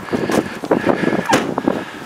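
Footsteps crunching on a gravel drive, with one sharper knock about two-thirds of the way in.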